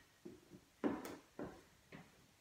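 Footsteps of trainers on a wooden floor, about four faint steps roughly half a second apart, as an aerobics box step is stepped out.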